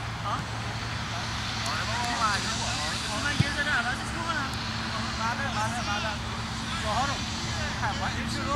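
Distant shouts and calls of players across a soccer field, over a steady low hum, with a single sharp knock about three and a half seconds in.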